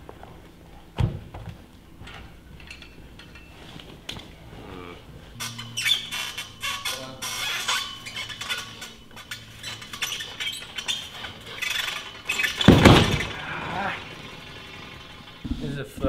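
A gymnast swinging on a high bar: a run of clicks and squeaks from the bar and its steel cables over several seconds, then a loud thump near the end as he comes off onto the landing mat.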